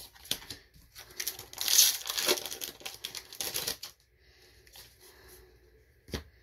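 Magic: The Gathering cards being handled: a run of clicks, slides and rustles as cards are flicked through and set down on piles, loudest about two seconds in and fainter over the last two seconds.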